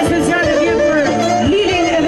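Live band playing folk dance music at full volume: a woman sings an ornamented, wavering melody into a microphone over violin, keyboard and drums keeping a steady beat.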